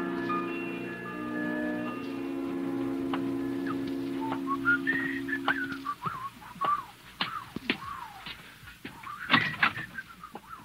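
A radio-drama music bridge of held orchestral chords ends about six seconds in. From about four and a half seconds in, a person whistles a wandering tune, with a few sharp knocks near the end.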